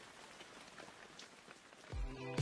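Faint steady rain, a soft hiss with a few light drop ticks.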